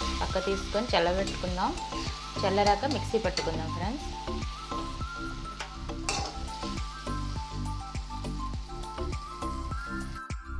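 A metal spatula stirring and scraping a tomato-and-onion masala around a metal kadai, with repeated clicks and scrapes against the pan over a light sizzle from the hot pan.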